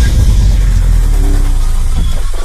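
Cinematic logo-reveal sound effect: a deep bass hit right at the start, then a sustained, loud low rumble with airy hiss above it.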